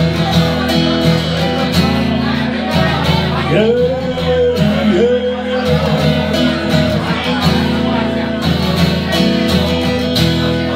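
Strummed acoustic guitar with a neck-rack harmonica playing a melody over it in an instrumental break. The harmonica bends two notes in the middle.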